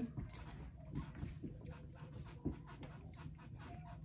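A person quietly eating a sushi roll: soft chewing and mouth sounds with a few small clicks, over a low steady room hum.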